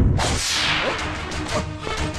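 A film sound-effect whoosh, a noisy swish that falls in pitch over about a second, with background score coming in under it.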